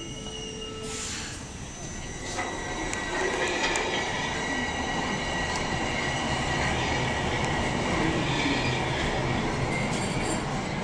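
Bombardier Toronto Rocket subway train pulling out of the station and picking up speed, its running noise growing louder from a few seconds in. A short hiss comes about a second in, and a steady high-pitched squeal sits over the rumble of the wheels on the rails.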